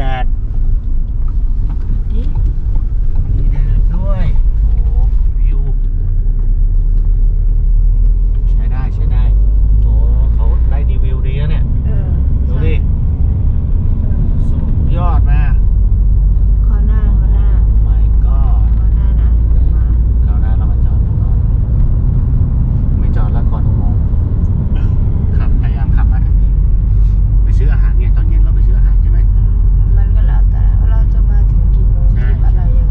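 Steady low road and engine rumble inside the cabin of a moving Ford Grand Tourneo Connect van, with quiet voices now and then.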